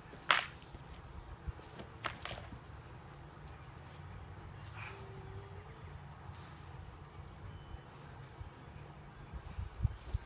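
Training axes and knives clacking against each other in sparring: one sharp strike about a third of a second in, the loudest, then fainter ones near two and five seconds.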